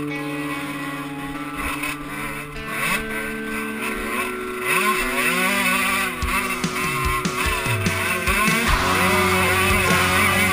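Suzuki RM125 two-stroke dirt bike engine revving up and down as it is ridden hard along a dirt track, its pitch climbing and dropping repeatedly and growing louder in the second half, with music playing along.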